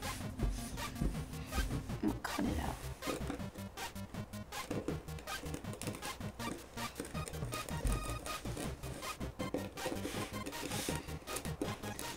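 Kinetic sand being pressed flat by hand and cut with a wheeled cutter tool, a soft crackly rubbing and scraping, over background music.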